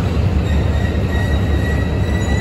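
Slow-moving train with a low steady rumble. A thin, high, steady wheel squeal from steel wheels on the rail sets in about half a second in.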